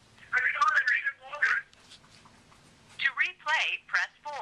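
A voice speaking in short phrases, played back from voicemail through a phone's loudspeaker, with a gap of near quiet midway.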